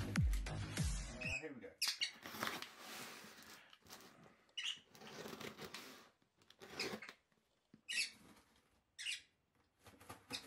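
Background music with a heavy beat that stops about a second in. It is followed by a cardboard parcel being handled and its tape worked open, giving short separate scrapes and rustles.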